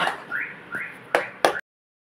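Two short rising whistle-like chirps, then two sharp knocks of a steel spoon against the aluminium pan, after which the sound cuts off suddenly.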